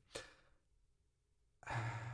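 A man sighs in exasperation: a faint breath just after the start, a pause, then a long breathy exhale with a low hum of voice in it near the end.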